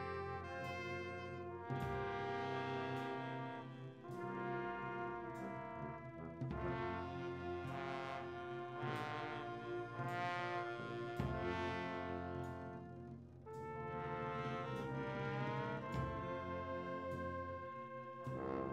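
Brass band music: held brass notes moving through a slow tune over a regular beat.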